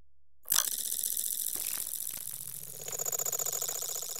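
Electroacoustic music: a faint low hum, then about half a second in a dense, fast-fluttering electronic texture of noise and several held pitches cuts in abruptly and carries on.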